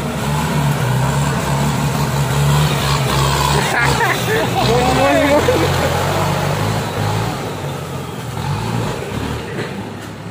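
Kubota M95 tractor's diesel engine running steadily under load as it turns through mud, getting a little quieter in the last few seconds as it moves away. A voice calls out briefly about four seconds in.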